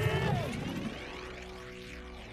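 Anime fight-scene soundtrack: dramatic background music, with a heavy, low impact-like hit at the start that eases off within the first second into steady sustained music.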